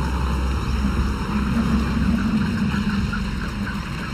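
A herd of Cape buffalo moving through a muddy wallow: a steady low rumble of splashing water, mud and hooves, sensed as danger when a lion approaches.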